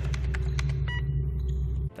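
Low steady rumbling drone from a cartoon soundtrack, with a short, high electronic beep about halfway through. The rumble cuts off suddenly just before the end.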